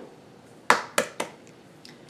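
Light clicks of kitchen utensils being handled: three quick taps, starting about three-quarters of a second in, and a faint one near the end.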